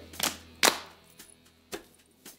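A few short, sharp taps, unevenly spaced: the loudest a little over half a second in and a fainter one near the end, with little else between them.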